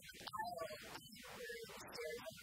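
A woman's voice in short phrases, its pitch gliding up and down.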